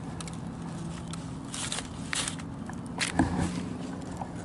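Scattered short crackles and rustles of newspaper being handled as a salmon is gutted on it with a knife, over a faint steady low hum.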